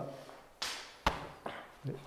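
A short rushing hiss, then one sharp slap about a second in: a hand striking a training partner's body in a sticky-hands drill.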